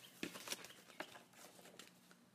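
Faint handling of product packaging being opened, with a few light clicks and soft rustles.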